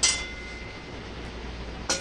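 Welded steel suspension mount set down on a steel welding table: one clink with a brief metallic ring that fades within about a second, then a low steady shop hum.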